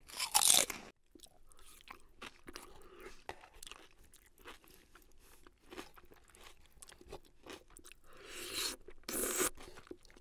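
Crunchy food being bitten and chewed close to the microphone: a loud crunch right at the start, irregular small crunching and chewing clicks, then two louder crunches near the end.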